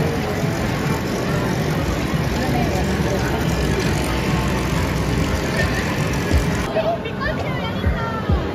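Busy amusement-arcade din: a steady, dense mix of game-machine noise and voices. About two-thirds of the way in it thins out, with clearer voices and a few low thumps.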